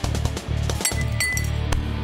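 Background music with a steady beat, and laboratory glassware clinking twice about a second in, knocked on a bench.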